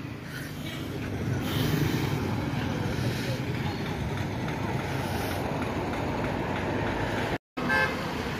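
Street traffic noise along a roadside: a steady rumble of passing vehicles. The sound cuts out briefly near the end.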